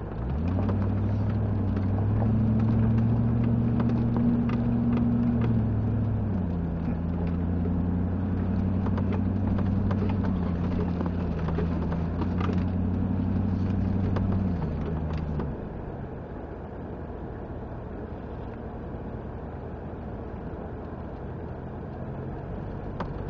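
4x4's engine pulling under load on an off-road track: the revs rise about half a second in, hold steady, step down around six seconds in, then ease off after about fifteen seconds to a lower rumble. Scattered light knocks and rattles run through it.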